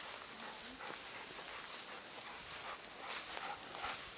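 Two dogs playing over a ball in long grass, heard faintly: rustling and movement in the grass with a brief soft dog vocalisation about half a second in.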